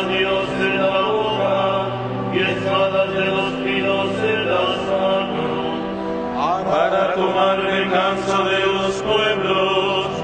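A psalm verse chanted in Spanish, the voice held on steady notes with occasional slides between pitches.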